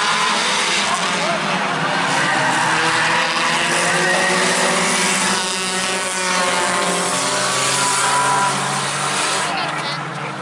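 A pack of compact race cars lapping a short oval track, their engines revving and easing in overlapping tones. About five to six seconds in the pack sweeps close past, the engine notes rising and falling as they go by.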